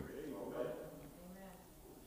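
Faint voices in a large room, fading over the first second and a half to quiet room tone.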